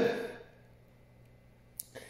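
A man's voice trailing off at the end of a word, then near silence in a small room, broken by one short, sharp click shortly before the end.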